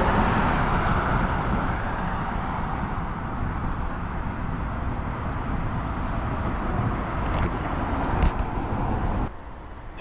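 Road traffic: a car passing close by, its tyre and engine noise loudest at first and easing off into steady traffic hum that cuts off abruptly near the end.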